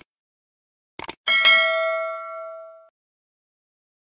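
Sound-effect mouse clicks: two quick clicks about a second in, followed by a bright notification-bell ding that rings out and fades over about a second and a half.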